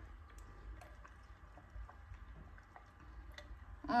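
Quiet, with faint scattered small ticks as an iced matcha latte is sipped through a straw and the ice cubes shift in the tumbler.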